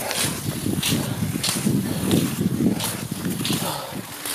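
Cross-country skiing on snow: rhythmic hissing swishes of skis and poles every half second to a second, over a steady rumble of wind on the microphone.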